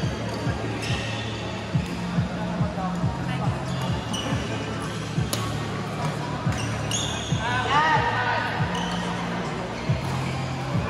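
Badminton rally: sharp racket strikes on the shuttlecock, repeated dull thuds of feet on the court, and rubber soles squeaking on the court mat about seven and a half seconds in.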